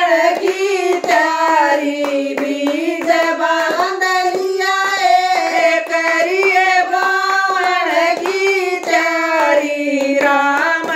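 Women's voices singing a Hindu devotional bhajan together, with hand claps keeping time throughout.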